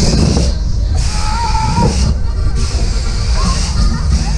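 Onride sound of a Höpler Schunkler swing ride in motion: a heavy, steady low rumble with fairground music and voices over it.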